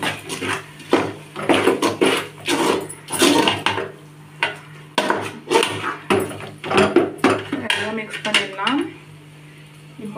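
A slotted stainless-steel spoon scraping and knocking against the sides and bottom of an aluminium pot while stirring thick gravy, at about two strokes a second, stopping near the end.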